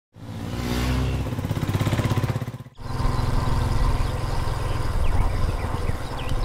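Motorcycle engine running and revving with a fast, even pulsing, briefly dropping away about two and a half seconds in before running on.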